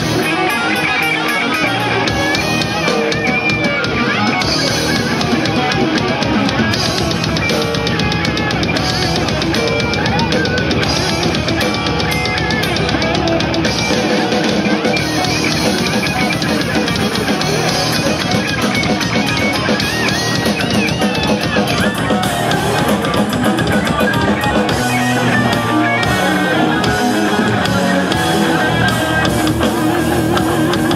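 A metal band playing live: electric guitars and a drum kit, loud and without a break.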